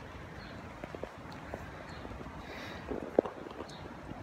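Bicycle riding noise: a steady low rumble with scattered light clicks and rattles, and one sharper click a little after three seconds in.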